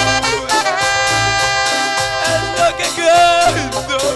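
Instrumental break of Latin-style band music: a brass-like lead melody over bass and percussion with a steady beat.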